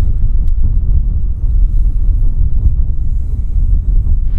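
Wind buffeting the microphone: a loud, heavy low rumble that flutters unevenly.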